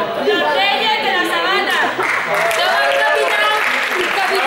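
Several voices talking and calling over one another, loud throughout, echoing in a large sports hall.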